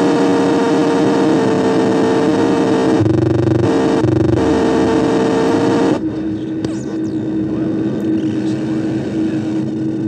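Distorted synthesizer drone: held notes over a dense noisy wash, the chord shifting about three seconds in. About six seconds in it drops back to a single steady held note.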